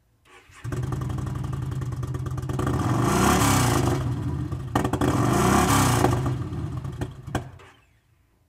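2012 Yamaha V-Star 950's 942cc V-twin, fitted with a Cobra slip-on muffler, starts up less than a second in and idles. It is revved twice by hand at the throttle, then shut off with a click near the end, and the engine runs down.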